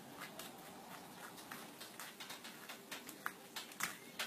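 Faint, irregular small clicks and taps of copper wire being handled and fitted into the end of a drill, a few sharper ticks near the end.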